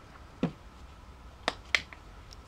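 Three sharp clicks from the plastic bottle of eye makeup remover and its cap being handled: one about half a second in, then two in quick succession.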